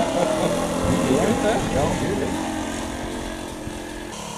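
Engine of a radio-controlled model airplane droning steadily in flight, fading as the plane flies away, with voices in the background during the first couple of seconds.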